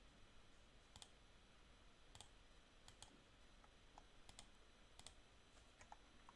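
Near silence with about ten faint, scattered clicks at a computer, several of them in quick pairs.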